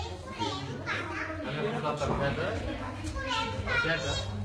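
Children's voices in the background: children playing and calling out, several high voices overlapping.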